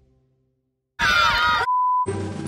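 Music dies away to a brief silence; about a second in, a short shriek with sliding pitches cuts in, then gives way to the steady beep of a TV colour-bars test tone, an editing sound effect.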